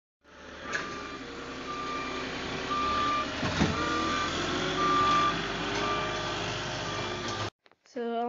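Truck-mounted forklift's backup alarm beeping about once a second, each beep about half a second long, over its running engine as it reverses away from a set-down pallet. The sound cuts off suddenly near the end.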